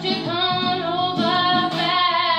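A woman singing one long held note, its pitch wavering slightly, with an acoustic guitar accompaniment underneath.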